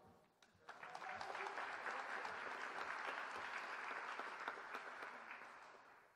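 Audience applauding, starting about a second in and fading out near the end.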